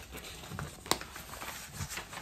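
Paper pattern pieces and linen-mix fabric rustling as they are handled and unfolded on a cutting table, with one sharp click about a second in.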